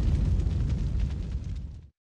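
Decaying tail of a cinematic boom sound effect: a low rumble with faint crackle that fades steadily and cuts off just before the end.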